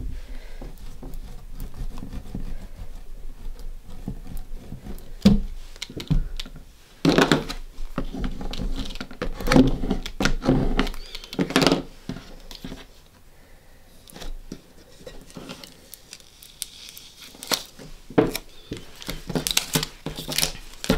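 A plastic vinyl squeegee rubbing over transfer tape on a vinyl decal on a wooden hanger, in short scraping strokes that come thickest in the middle. Near the end come small crinkling sounds as the transfer tape is peeled off and handled.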